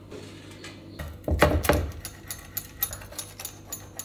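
A metal spatula scraping a baked flatbread off a metal baking sheet, with a knock and thud onto a wooden cutting board about a second in. Then a run of quick crisp clicks, about three or four a second, as a pizza cutter cuts through the crust on the board.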